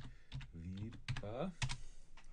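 Typing on a computer keyboard: a quick run of separate key clicks as a word is typed into a search box, ending with the search being entered.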